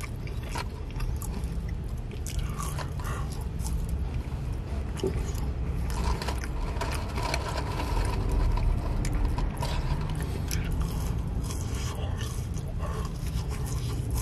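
Close-miked ASMR chewing and biting of McDonald's french fries, many small crackles and mouth clicks, with heavy breathing over a steady low rumble.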